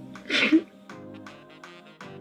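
A crying woman lets out one sudden, loud sob, a short burst of breath with a brief catch of voice at its end, about a quarter of a second in. Background music plays under it.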